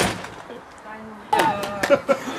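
A single sharp knock, then about a second and a half in a burst of shouting voices mixed with several more sharp knocks, at an outdoor youth football match.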